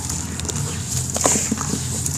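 Hands squeezing and crumbling lumps of wet sand-cement in muddy water: wet squelching with irregular crackles and small clicks as the clumps break apart.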